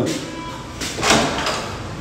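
A hotel-room door being unlocked with a key card: a short clatter from the lock and handle about a second in.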